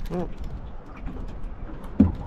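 A short exclaimed "oh" at the start, then a steady low rumble of wind on the microphone with a few faint clicks.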